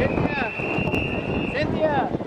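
A swim meet official's whistle blowing one long, steady, high blast of about a second and a half, over crowd chatter and children's voices.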